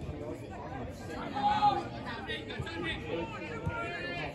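Indistinct voices of people around a football pitch, talking and calling out, with one voice louder about a second and a half in.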